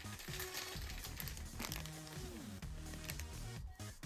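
Quiet background music with held low notes and one falling glide in pitch, with faint crinkling of a thin plastic bag as a small figure is handled.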